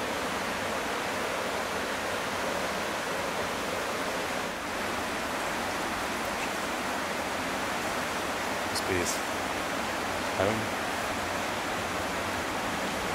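Steady, even rushing outdoor noise with no clear rhythm, with two short high chirps about nine seconds in.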